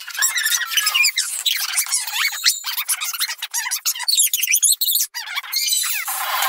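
Cartoon soundtrack played at four times normal speed, turning the dialogue and effects into rapid, high-pitched squeaky chatter.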